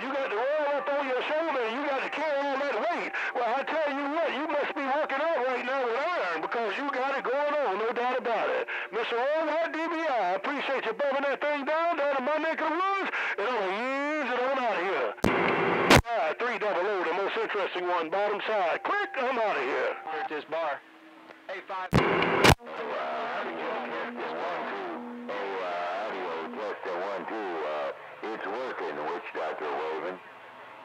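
Radio receiver audio of distant CB stations talking: garbled, warbling voices over the air, with two short, loud bursts of static about halfway through and again several seconds later.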